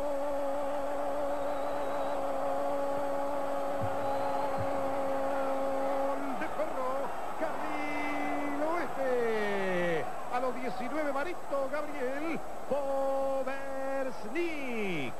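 A football TV commentator's long held goal cry: one voice on a single steady note with a slight wobble, breaking off about six seconds in into excited shouts that swoop up and down in pitch.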